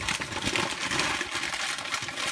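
Packaging being handled and opened, a dense run of rustling and crinkling made of many small crackles.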